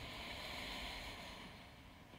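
Faint steady hiss of a quiet voice-over recording between spoken cues, thinning slightly toward the end.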